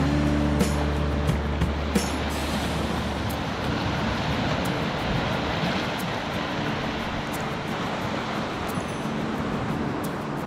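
Small waves washing in over a flat rock shelf, a steady rush of surf. Background music notes hold over it for the first few seconds, then fade.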